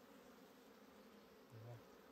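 Faint, steady buzzing of honeybees flying around their dug-open nest and exposed comb. A brief low hum sounds about a second and a half in.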